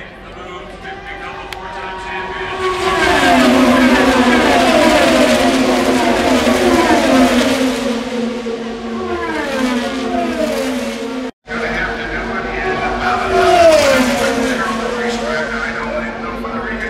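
IndyCar race cars with 2.2-litre twin-turbo V6 engines passing at speed in a pack. Engine notes fall in pitch one after another as each car goes by, loudest from about three seconds in. The sound cuts out briefly a little past the middle, then more cars pass.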